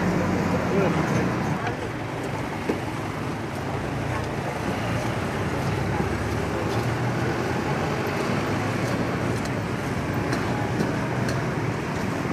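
Steady road traffic noise with indistinct voices, and over it the faint knocks and scrapes of a pestle crushing chillies in a small earthenware mortar.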